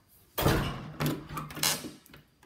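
A wooden door being pushed open, scraping and knocking in three noisy strokes about half a second apart.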